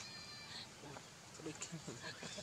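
A macaque giving one short, high-pitched call, about half a second long, at the start.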